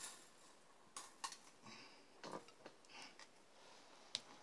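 Near silence with a few faint clicks and small knocks from hands handling an unplugged electric guitar's strings.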